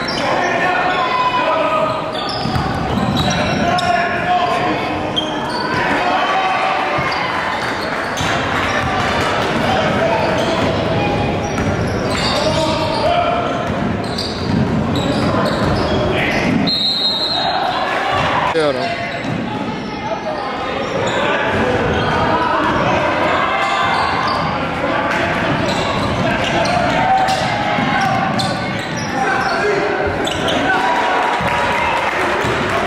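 Live sound of a basketball game in a large gym: a basketball bouncing on the hardwood court under indistinct voices of players and spectators, echoing in the hall.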